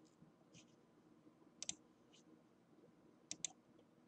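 Faint computer mouse clicks in near silence: a quick double click about a second and a half in and another a little over three seconds in, with a couple of fainter single clicks between.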